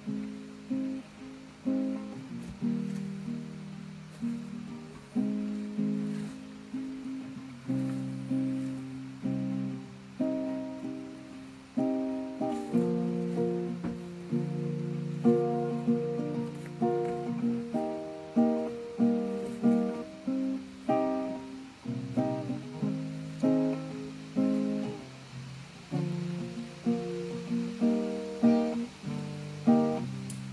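Nylon-string classical guitar played solo, fingerpicked: a melody of single plucked notes over lower bass notes, each note ringing and then fading before the next.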